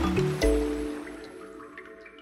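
Produced segment-intro sting: music with a deep impact hit about half a second in that slowly fades, layered with watery splash and drip sound effects.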